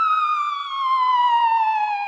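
A siren wail winding down: one pitched tone, steady at first, then gliding slowly and smoothly lower in pitch.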